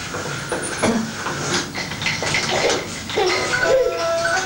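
Clattering and knocking of plastic baby toys against a baby walker's tray. Near the end an electronic toy keyboard starts playing beeping notes that step from pitch to pitch.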